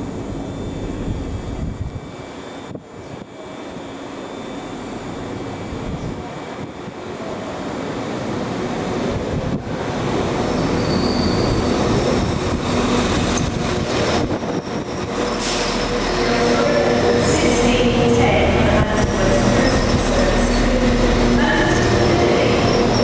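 A Transport for Wales Class 197 diesel multiple unit running into the platform. It grows louder as it draws alongside, and short high wheel squeals come in the second half.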